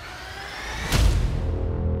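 Trailer music: a faint rising whoosh builds to a single heavy impact hit about a second in, followed by a sustained low chord.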